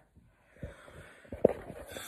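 Handling noise from a handheld phone being moved, with breath close to the microphone and a short sharp click about one and a half seconds in.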